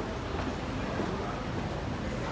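Steady city street ambience: a continuous hum of traffic noise.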